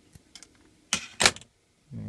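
Hand wire strippers cutting and pulling the insulation off 12-gauge wire: a few light clicks, then two sharp snaps about a quarter second apart. Just before the end a short low hum begins.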